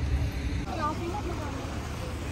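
Outdoor background noise with a steady low rumble, and a faint voice briefly heard about a second in.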